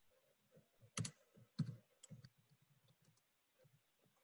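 Near silence broken by a handful of clicks and knocks over a video-call line, the two loudest about a second and a second and a half in, then a few fainter ticks.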